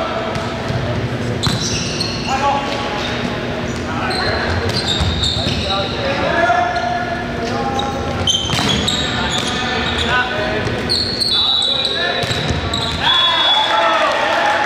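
Indoor volleyball rally: the ball struck several times, players shouting calls, and short high squeaks, all echoing in a large gymnasium.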